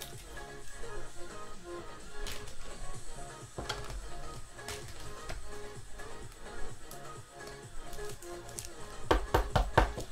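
Background music with a steady, repeating pattern of notes. Over it come a few light clicks, then a quick run of sharp taps near the end as trading-card packs and cards are handled.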